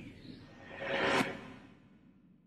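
Logo-intro whoosh sound effect that swells to a peak about a second in and then fades away, over a fading low rumble.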